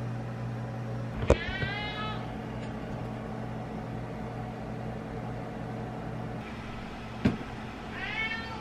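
Domestic tabby cat meowing once, about a second and a half in, over a steady low hum. A short knock near the end.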